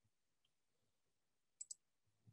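Near silence, broken near the end by two quick, faint clicks on the computer that move the slideshow on to the next slide.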